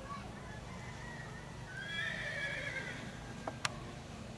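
A horse whinnies once, a high call lasting about a second starting about two seconds in, followed by two sharp knocks near the end.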